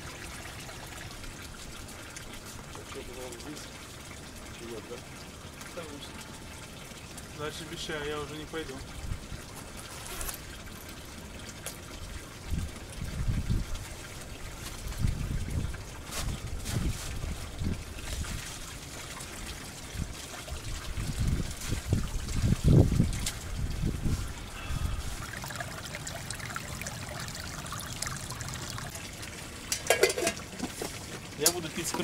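Spring water trickling steadily at a stone-lined mountain spring. Intermittent low rumbles come in from about twelve seconds in and fade out after about twenty-five seconds.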